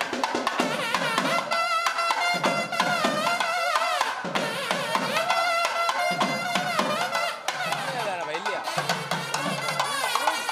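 South Indian temple procession music: thavil drum strokes played fast and dense under a loud melodic line of long, wavering, gliding notes.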